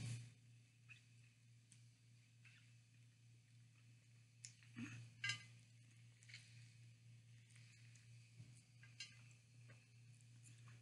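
Near silence with a low steady hum, broken by a few faint wet mouth sounds of eating a whole mango by hand, the loudest a pair about five seconds in.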